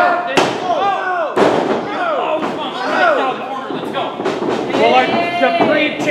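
Two sharp impacts in a wrestling ring, about half a second and a second and a half in, with people shouting and yelling over them and a longer drawn-out shout near the end.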